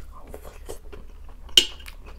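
Close-miked chewing and small mouth noises, then one sharp clink of a metal fork against the plate about a second and a half in.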